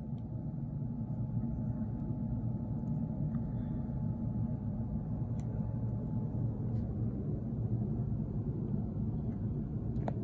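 A steady low rumble of background noise, with a faint steady hum above it and a few faint, scattered clicks.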